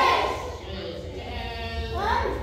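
A person's voice calling out in a long, drawn-out tone, loudest at the very start and then held, over a steady low hum.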